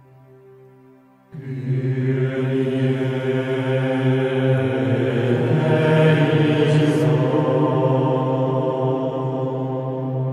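Chant-like music: held vocal tones over a low steady drone. It starts quietly and swells suddenly about a second in, then stays full.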